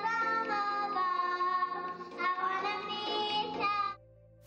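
A young girl singing into a microphone on stage, holding long notes that slide between pitches; the singing cuts off suddenly near the end.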